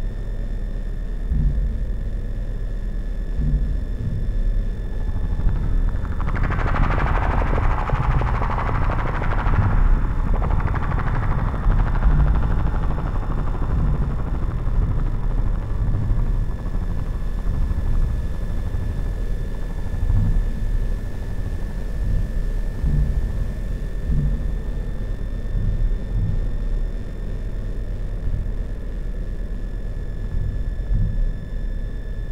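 Synthesizer played from a keyboard: a deep, rumbling low drone throughout, with a hissing noise swell that rises about six seconds in and fades away by about twelve seconds.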